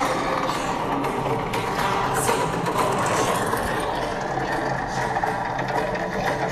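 Film soundtrack, music with action sound effects, played at a steady level through the four speakers of an 11-inch M1 iPad Pro to show off their bass.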